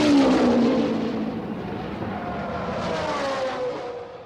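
Racing car engines at high revs, the note dropping in pitch as a car goes past at speed, loudest at the start, with a second falling sweep near the end as the sound begins to fade.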